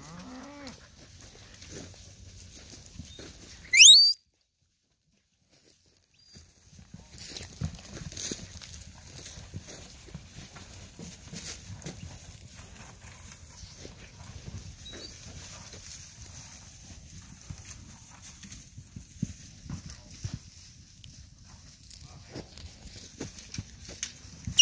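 A herd of cattle being driven by a herding dog: a steady scuffling of hooves over dry dirt and brush with many small knocks. About four seconds in, one short, loud whistle rises sharply in pitch, followed by a brief dropout of sound.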